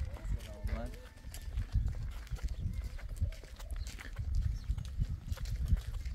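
A person's voice for about the first second, then footsteps and rustling of people walking on a dirt path, over a low rumble with scattered light clicks.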